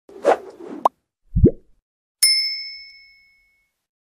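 Logo-intro sound effects: a brief swish, then a low rising pop about a second and a half in, then a bright bell-like ding that rings and fades over about a second and a half.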